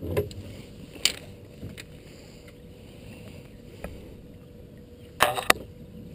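Quiet background on the water with a few light knocks, then a short burst of splashing near the end as a hooked blue catfish is led to the side of the boat.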